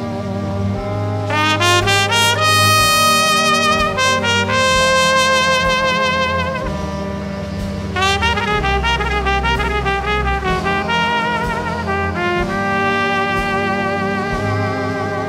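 Jazz trumpet playing over low accompaniment: quick rising runs and long held notes, some with a wide vibrato.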